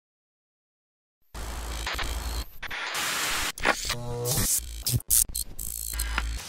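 Silence, then about a second and a half in, a burst of electronic static and glitch sound effects over a deep rumble, chopped by several brief dropouts, with a short stepped electronic tone about four seconds in: a production-logo sting.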